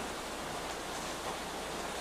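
Steady hiss of background noise with a faint low hum: room tone and recording hiss in a pause between speech.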